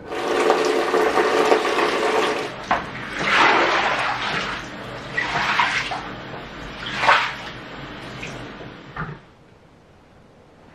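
Water poured out of a plastic bucket and splashing across a tiled floor to rinse it: one long pour, then several shorter splashing pours, stopping about nine seconds in.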